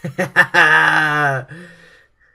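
A man laughing: three quick bursts, then one longer drawn-out laugh that trails off near the end.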